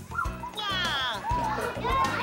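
Young children's excited, high-pitched voices and squeals over background music, with one long squeal falling in pitch about half a second in.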